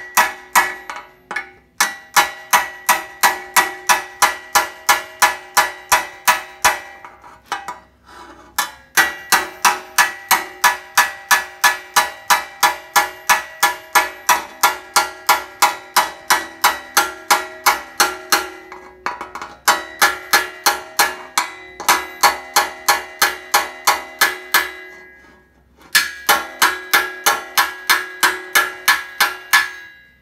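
Rapid hammer blows on an 18-gauge steel patch panel held over a blacksmith anvil, about four blows a second in runs of several seconds broken by short pauses, the sheet ringing with every strike. The blows are moving material from the panel's face down into its flange.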